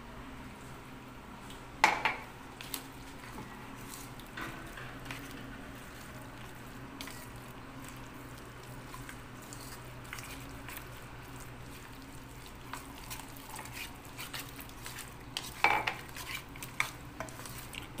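Metal spoon stirring a thick gram-flour (besan) batter with chopped potato and onion in a stainless steel bowl: soft scraping and clinks of the spoon against the bowl. A sharp knock about two seconds in is the loudest sound, and the clinks come thicker near the end.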